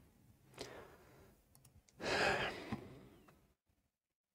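A man's sigh: one breath out of about a second, with a faint short breath before it and a few small clicks after.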